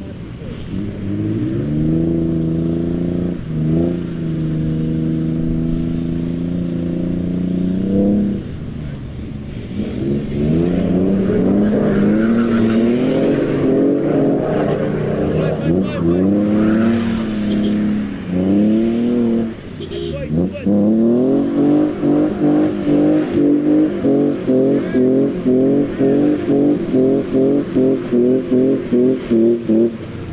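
A 4x4's engine revving hard as it tries to drive through deep mud: held at steady high revs at first, then rising and falling, and near the end pulsing quickly about three times a second as the throttle is pumped.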